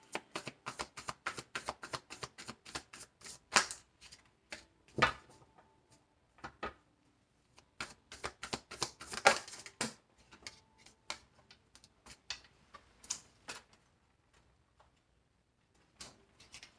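A tarot deck being shuffled by hand, overhand: quick runs of soft card clicks and slaps, pausing briefly about a third of the way in, then stopping shortly before the end.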